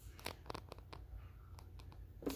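Faint handling noise: a scattering of light clicks and scrapes as objects are moved about, with no voice.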